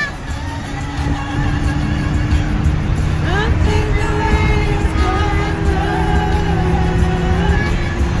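Music with a held, wavering sung melody, over the steady low rumble of a car driving at road speed.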